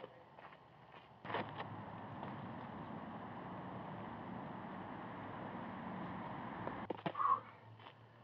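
Steady outdoor background noise, with a few short faint scuffs of footsteps on gravel near the start and again near the end.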